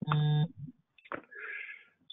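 A short electronic beep, one steady pitched tone lasting about half a second, followed a second later by a faint brief hiss.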